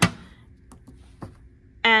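The hinged plastic incubator lid of an Ortho Workstation blood-bank analyzer shutting with one sharp thunk, followed by a couple of faint clicks.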